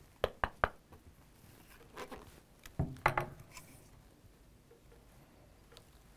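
Handling noise from a Hatsan Hydra PCP air rifle: three quick sharp clicks near the start, then a few duller knocks and rustles around the middle as the rifle is brought down onto the table.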